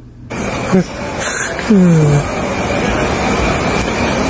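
Loud, steady rushing hiss on a police body camera's microphone, cutting in a moment after the start, with faint voices buried in it.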